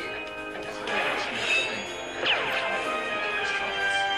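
Theme music of the cartoon's opening titles, with a falling glide in pitch a little over two seconds in.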